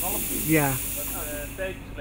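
Fog machine spraying with a steady high hiss that cuts off near the end.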